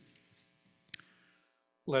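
A quiet room with a faint steady hum and one short, sharp click about a second in; a man's voice begins speaking right at the end.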